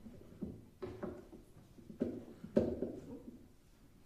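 Microphone being adjusted on its stand: a handful of short handling knocks and rubs, the loudest about two and a half seconds in.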